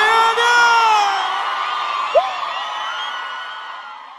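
The close of a live sertanejo track: the band stops under a last held vocal note, leaving a crowd cheering and whooping, with one short yelp about halfway through, all fading steadily away.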